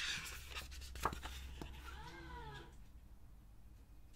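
Sticker book pages rustling as they are flipped, with a sharp click about a second in. About two seconds in comes a faint, short cry that rises and then falls in pitch.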